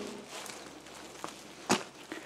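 Faint footsteps on gravel while the camera is carried, with one sharp knock a little before the end.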